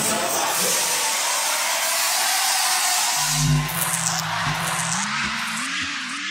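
DJ mix transition effects: the song's bass cuts out and a steady rush of noise plays for about three seconds. Then a low hum comes in, and rising and falling electronic glides follow near the end.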